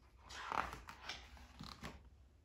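A large picture book's paper page being turned by hand: a soft rustle of the page that swells about half a second in, then a few light ticks as the page is laid flat near the end.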